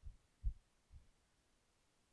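Three dull, low thuds about half a second apart, the middle one loudest.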